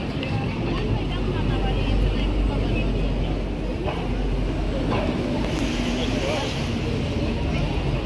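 Busy city street ambience: a steady low rumble of traffic with passers-by talking around.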